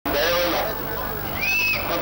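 A man speaking into a handheld microphone, his voice amplified over public-address loudspeakers.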